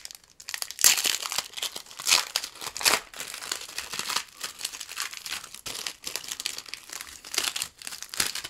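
Plastic foil wrapper of a 1994 Topps Stadium Club baseball card pack crinkling and tearing as it is pulled open by hand. The crackly rustle is irregular, with the sharpest bursts about one, two and three seconds in.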